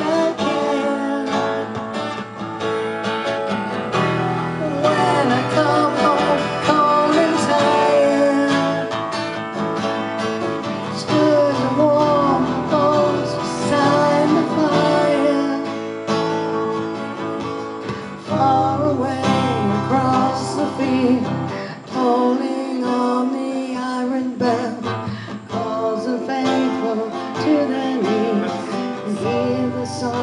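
Music: acoustic guitars playing a song.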